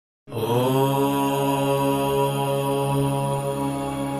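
A deep voice chanting one long, steady "Om" on a low note. It comes in about a quarter of a second in with a short upward slide into the pitch.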